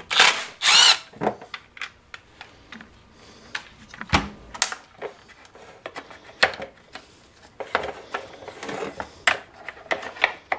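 Milwaukee M12 Fuel cordless driver running in two short bursts in the first second, backing out two handle screws on a chainsaw. These are followed by scattered clicks and knocks of the plastic handle parts being handled and pulled apart, with one louder knock about four seconds in.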